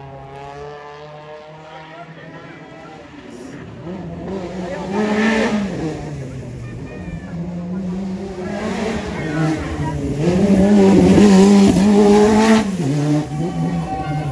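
Rally car engines at full throttle on a mountain road: one car's engine climbing in pitch as it pulls away, then another engine revving hard and rising and falling through its gears as it approaches, getting louder, then dropping off suddenly near the end.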